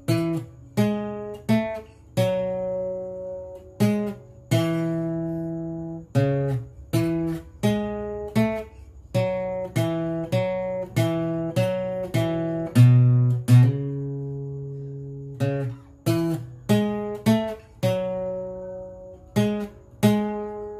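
Yamaha APX 500 II steel-string acoustic guitar, capoed, playing a slow melody one plucked note at a time. Each note rings and fades, and a few are held longer.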